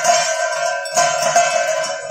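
Hand-rung aarti bells ringing continuously, with a stronger stroke about once a second.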